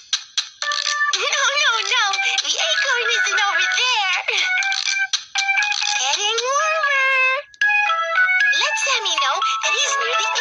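Cartoon squirrels' high-pitched, squeaky chattering voices that slide up and down in pitch, over a bright electronic children's tune.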